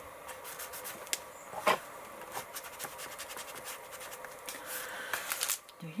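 Paper and clear plastic journal pages being handled on a craft desk: soft scratching and rustling with scattered small clicks, a few of them sharper.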